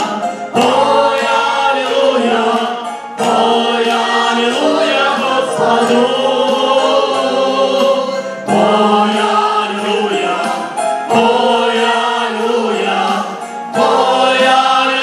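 Worship song sung by several voices on microphones, with a Yamaha electronic keyboard accompanying. The singing comes in phrases with brief breaks between them.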